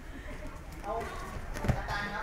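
A practitioner taken down onto the dojo's training mats: feet scuffling, then a single sharp thud of a body landing near the end.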